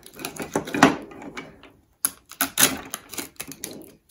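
Pink hard-plastic surprise-toy ball being pried open compartment by compartment: a run of sharp plastic clicks and taps, with a brief pause about halfway through.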